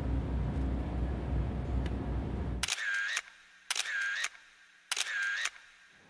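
A steady low rumble for the first two and a half seconds, then a single-lens reflex camera fires three times about a second apart. Each shot is a half-second click with a short whine that dips and comes back up, like a motorised film advance.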